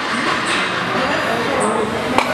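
Steady, loud background din of a busy gym, with indistinct voices in it.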